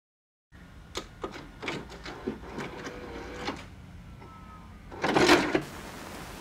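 A low steady hum with a series of separate mechanical clicks and clunks, then a louder half-second rush of noise about five seconds in.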